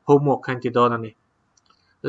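A man's voice speaking for about a second, then a pause with a couple of faint clicks.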